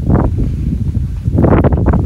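Wind buffeting the microphone: a loud, steady low rumble with two stronger gusts, one at the start and one about a second and a half in.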